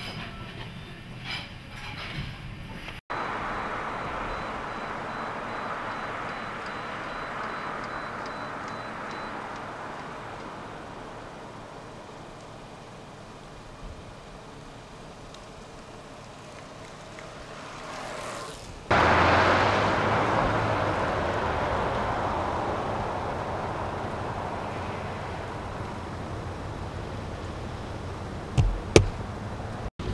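Steady outdoor street noise that slowly fades, then an abrupt change to the louder rumble of a car driving, heard from inside the cabin, with two sharp knocks near the end.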